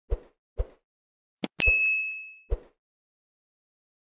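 Subscribe-button animation sound effects: two mouse-style clicks, then a click and a bright bell ding that rings for about a second, then one more click.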